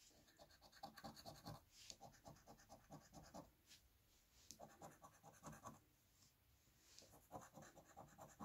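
A coin scratching the coating off a paper scratch-off lottery ticket. It comes faintly, in several short bursts of quick back-and-forth strokes with brief pauses between.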